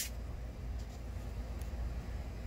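Steady low background hum with a faint hiss and a couple of faint brief ticks; no distinct event.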